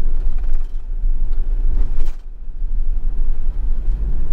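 Steady low rumble of a camper van on the move, road and engine noise heard from inside the cab, with one brief click about halfway through.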